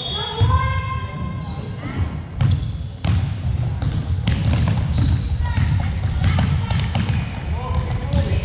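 Basketball bouncing on a hardwood gym floor during play, a run of sharp knocks from about two seconds in. Voices call out over it, mostly near the start.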